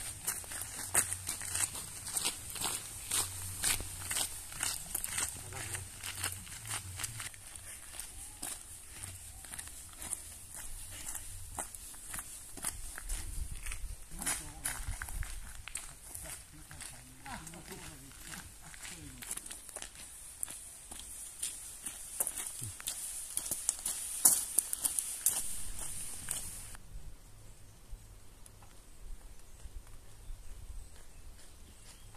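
Footsteps crunching on a gravel path, a steady run of short steps that is densest in the first few seconds, with faint voices around the middle.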